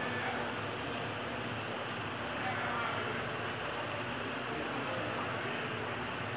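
Indistinct background talk among several people over a steady room hum, with no clear impacts or clashes.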